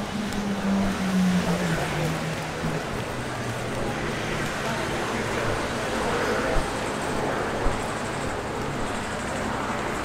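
Busy city street: steady traffic noise from the road alongside, with one vehicle's engine note dropping in pitch over the first few seconds as it passes, and pedestrians' voices mixed in. Two brief knocks come about a second apart past the middle.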